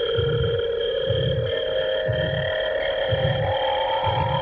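Eerie horror-film score: sustained drone tones held over a slow, low throbbing pulse that beats about once a second, like a heartbeat.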